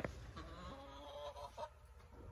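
A chicken calling: one wavering, drawn-out call lasting about a second, starting about half a second in. A sharp knock comes just before it, at the very start.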